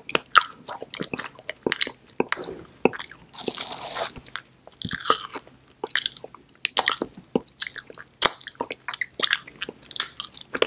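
Close-miked chewing of edible chocolate 'soap', with wet mouth clicks and smacks coming thick and irregular. There is a short hiss about three and a half seconds in.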